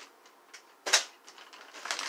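Clear plastic parts bag crinkling as it is lifted and handled, with one sharp, loud crackle about a second in and more rustling near the end.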